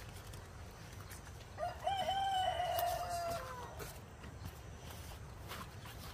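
A rooster crowing once, a single call of about two seconds starting a second and a half in, with short opening notes and a long held note that drops at the end.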